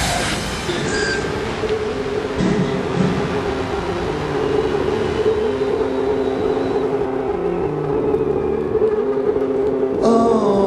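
Live concert sound between songs: a sustained droning tone with a few held low notes that shift in pitch every second or two, over a steady noisy haze, just after the band's loud final hit cuts off.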